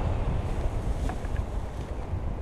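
Airflow buffeting the microphone of a pole-held camera during a tandem paraglider flight: a steady, low rumbling rush of wind.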